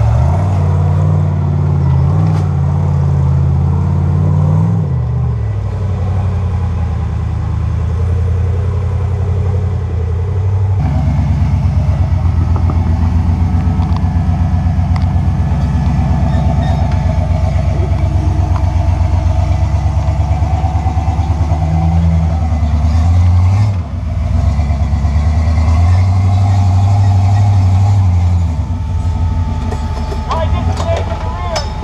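Rock-crawling vehicle engines working under load on a steep rock climb, revving up and down as the throttle is worked. About a third of the way through, the sound changes abruptly to a second, throbbing engine: the blue Jeep that follows the tube-chassis buggy up the slab.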